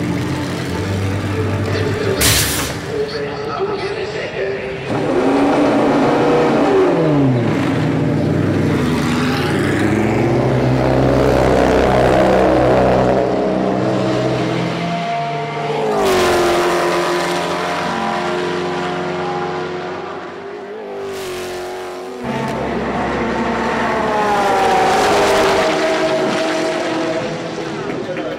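Race car engines running at speed on the circuit. The pitch sweeps down about five seconds in and rises again in the last few seconds.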